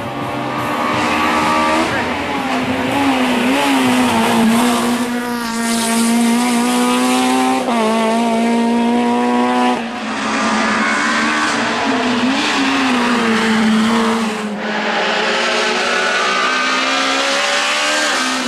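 Honda Civic hill-climb race car's engine revving hard as it climbs toward the camera, its note rising through each gear and dropping at each upshift, several times over.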